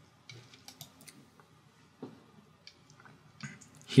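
A few faint, scattered computer mouse clicks, spaced unevenly.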